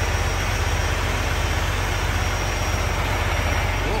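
Heavy diesel engine idling steadily, a low, even, finely pulsing idle.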